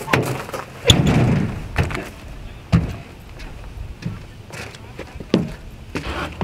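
A few knocks and thumps on a pickup truck's body and bed, the loudest about a second in, as someone climbs into the bed over the tailgate.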